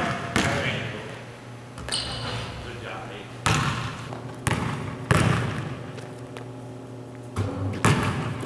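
A basketball is bounced hard on the hardwood floor of a large gym during a dribbling drill. Several sharp bounces come at uneven intervals, each echoing briefly off the hall.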